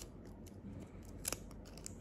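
Small handmade paper sticker being handled between the fingers: a few light, crisp paper clicks, the sharpest a little past halfway.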